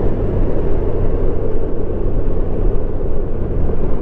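Steady wind rush and road rumble on the mic of a motorcycle in motion, with the low, even hum of a 2019 Honda Gold Wing's flat-six engine underneath. The bike is holding a steady speed.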